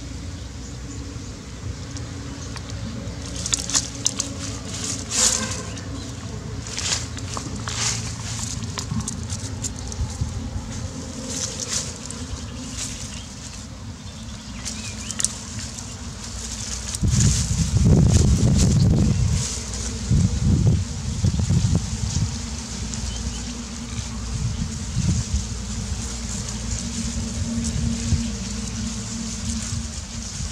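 A dog digging and nosing at a hole in dry grass: irregular scratchy crackles of paws in dirt and rustling dry stalks, with a steady low rumble on the microphone and a louder low rumble for about two seconds past the middle.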